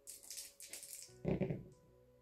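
A few small dice rolled onto a tabletop gaming mat, a brief clatter in the first second followed by a duller thump about a second and a half in.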